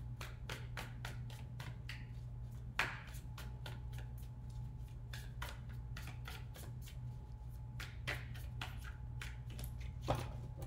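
A tarot deck being shuffled by hand: a run of quick, light card clicks, several a second, with a sharper slap of cards about three seconds in.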